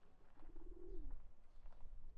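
A feral pigeon's single faint coo, starting about half a second in and dropping in pitch at its end.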